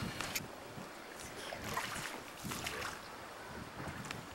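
Outdoor ambience with wind rumbling unevenly on the camcorder microphone and a few faint clicks.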